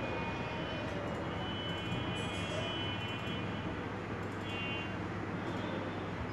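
Steady background noise with a low hum, and faint high tones that come and go a few times.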